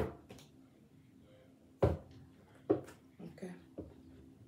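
A deck of tarot cards knocked against the table: three sharp knocks, right at the start, a little under two seconds in and just under three seconds in, then a few softer knocks near the end.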